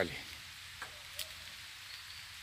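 Faint, steady outdoor hiss with two soft ticks about a second in.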